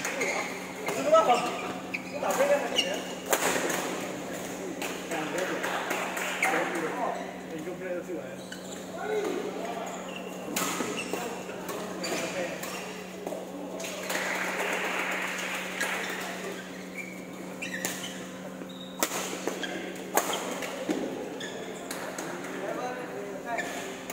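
Badminton rackets striking a shuttlecock in sharp, irregular hits, with voices chattering throughout and a steady low hum.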